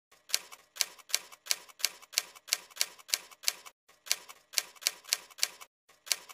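Typewriter keystroke sound effect: sharp, evenly spaced key strikes at about three a second, with a brief pause a little before the middle, as the title is typed out letter by letter.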